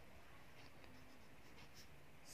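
Faint scratching of a pen writing by hand on a workbook's paper page.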